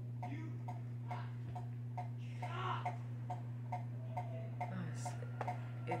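Steady faint ticking, about three ticks a second, over a low electrical hum. A short soft hiss comes about two and a half seconds in.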